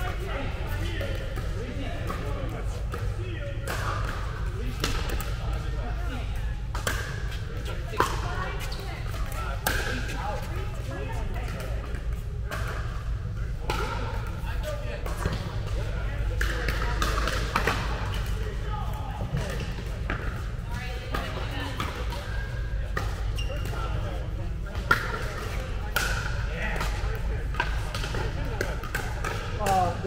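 Pickleball paddles hitting a plastic ball during rallies: sharp, irregular pops, the loudest about eight and twenty-five seconds in, in a large indoor hall over a steady low hum.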